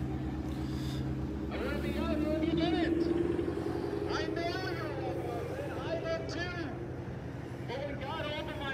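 Street traffic: car engines running and passing, with the engine hum swelling loudest about two to three seconds in. Indistinct voices talk over it.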